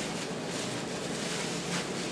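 Soft rustling of a round flatbread and a white cloth being handled, over a steady background hiss.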